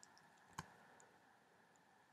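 Near silence with one faint short click a little over half a second in.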